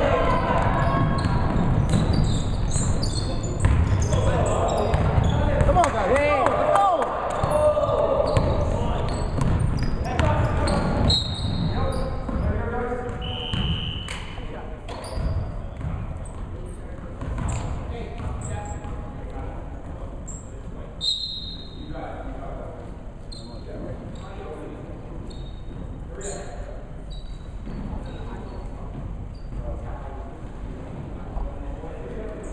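Indoor basketball game: shouting voices from players and bench over a ball bouncing on the hardwood court floor, echoing in the gym. It is loudest over the first dozen seconds and grows quieter after.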